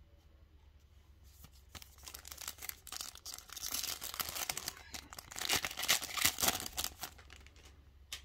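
Trading-card pack wrapper being torn open and crinkled by hand, a dense crackling that starts about a second in and is loudest in the last couple of seconds.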